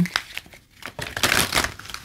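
Rustling and crinkling with a few light clicks, as of tarot cards being handled; loudest about a second and a half in.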